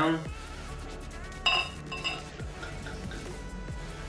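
Glass beer bottle clinking twice against the rim of a stemmed glass, the two strikes about half a second apart and ringing, then beer being poured into the glass. Background music plays throughout.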